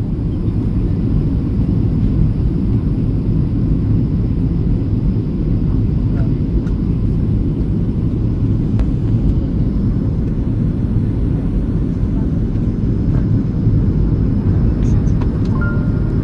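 Airliner cabin noise from a seat over the wing: a steady low rumble of engines and rushing air as the plane flies low with its flaps extended, on descent.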